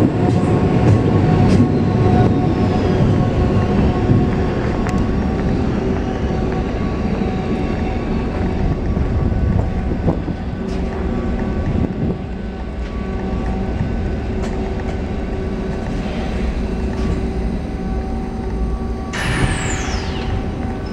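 GVB M2/M3 metro train running in along the platform with a heavy rumble that eases off over the first few seconds as it slows. It then stands with a steady hum of several tones, and a high falling whine breaks in near the end.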